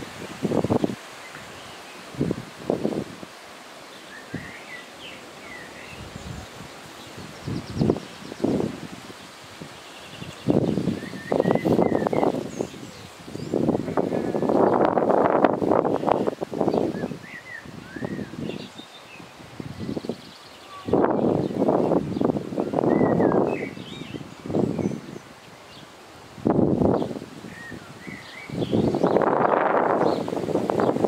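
Leaves and grass rustling in irregular bursts, the longest a few seconds long, with small birds chirping briefly now and then.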